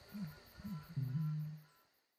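Outro sound effect of night ambience: crickets chirping steadily behind a series of short low animal calls, each rising and falling, about every half second. About a second in, a longer, louder low growl-like call is held, then all the sound cuts off at the very end.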